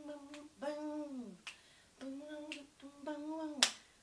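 A woman singing wordless a cappella notes, several held and then sliding down in pitch, with short gaps between them. A single sharp click near the end is the loudest sound.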